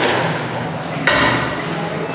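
Two sharp squash-ball impacts about a second apart, racket and wall strikes ringing in the enclosed court.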